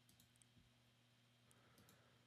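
Near silence with a few faint computer mouse clicks, as a link is clicked and the next page loads.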